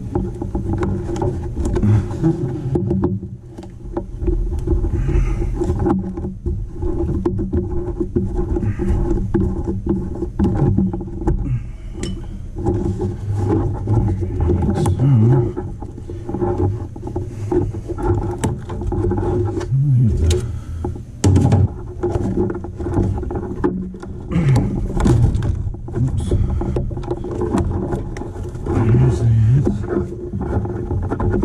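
Steady low mechanical hum with a rumble underneath, from an unidentified running machine. Scattered clicks and rustles from hands handling the insulated refrigerant line and the copper fittings at the coil.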